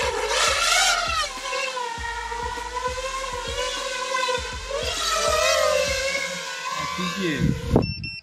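Five-inch FPV quadcopter with T-Motor Velox 2207 motors and Gemfan 5136 propellers whining in flight, its pitch wavering up and down as it flies itself home on GPS Rescue, an autopilot return that sounds strange to its pilot. The sound cuts off suddenly near the end.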